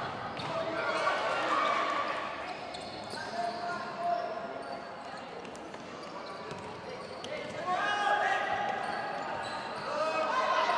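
Indoor futsal game: players and bench calling and shouting, echoing in the gymnasium, with the thuds of the ball being kicked and played on the court. The shouting swells again near the end.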